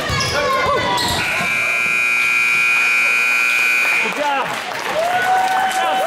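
Gymnasium scoreboard buzzer sounding one steady electronic tone for about three seconds, starting about a second in, over squeaks and voices from the basketball court.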